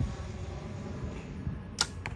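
Compound bow being shot: a single sharp crack near the end.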